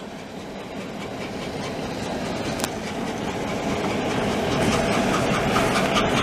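CN freight train passing, with its EMD GP9 diesel locomotive running and the wheels of covered hopper cars clacking over the rails. The sound grows steadily louder as the train comes closer.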